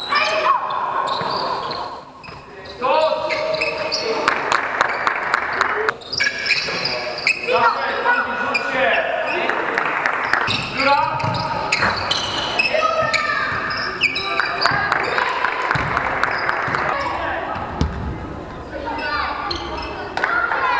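Basketballs bouncing on a sports-hall court, with players' voices echoing in the large hall.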